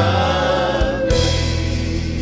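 Church gospel choir singing a worship song in sustained, held notes over steady low instrumental backing.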